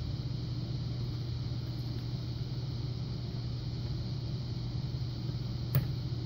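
Steady low background hum of the room, with a brief faint tick near the end.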